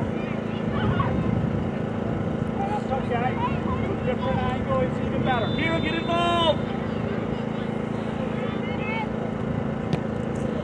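Distant shouting of players and coaches across a soccer pitch, with one louder, longer call between about five and six and a half seconds in, over steady wind and a low hum.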